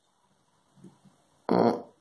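Mostly near silence, with one short vocal sound from a nearby person, like a hesitation noise, about one and a half seconds in.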